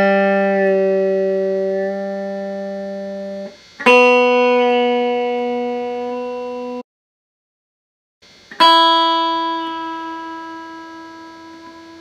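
Epiphone Les Paul electric guitar: three single open-string notes plucked one after another (G, then B, then high E), each ringing out and slowly fading. There is a sudden cut to silence after the second note before the third is plucked.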